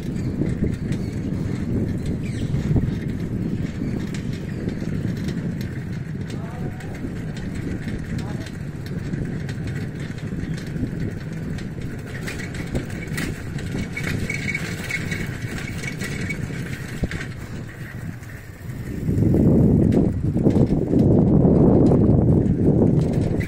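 Wind buffeting the microphone of a moving handheld phone: a steady low rumble that swells much louder about nineteen seconds in.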